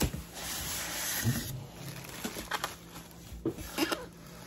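Packaging being handled as a small appliance is pulled from its cardboard box: a rustling scrape of cardboard and plastic, then a few short sharp knocks and crinkles.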